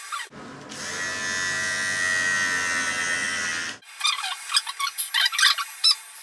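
Electric hair clippers switched on and buzzing steadily for about three and a half seconds, then cutting off abruptly. Irregular clicks and rustling follow.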